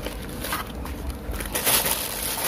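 Plastic bag crinkling as a hand grips the plastic-wrapped set-top box, louder near the end.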